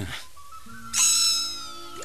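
A high, squeaky cartoon-creature cry that starts about a second in, is the loudest sound, and falls slowly in pitch over about a second. It comes from the small bug held up in the rat's fingers, over soft music.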